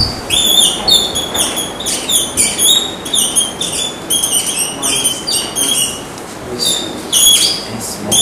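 Dry-erase marker squeaking on a whiteboard as words are written: a quick run of short, high squeaks, one per stroke, with a brief lull about six seconds in.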